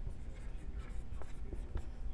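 Marker writing on a whiteboard: a run of short, scratchy pen strokes with a couple of sharper taps.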